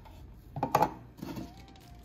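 A few light clinks and knocks as a plastic measuring cup and a glass jar are handled on a countertop, the loudest a little under a second in.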